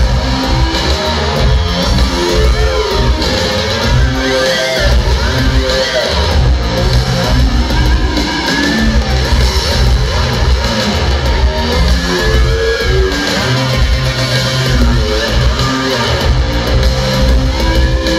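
Live synth-pop band playing loudly through a concert PA: synthesizer keyboards and electric guitar over heavy bass with a steady beat.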